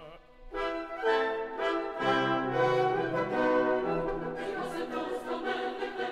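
Orchestral music with prominent brass: after a brief dip, sustained chords enter about half a second in with several detached strokes, and the full orchestra brightens about two-thirds of the way through.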